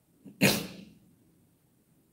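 A man's single short, sharp burst of breath, starting about half a second in and fading out within half a second.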